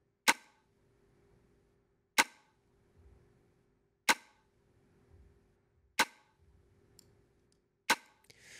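Soloed snap-and-snare drum bus of a beat playing back: five sharp snap-and-snare hits about every two seconds, each dying away quickly. The hits run through a fast compressor (0 ms attack, 1 ms release, 10:1 ratio, hard knee) whose threshold is being lowered to about −25 dB, the point where the compressor starts to clamp the hits audibly.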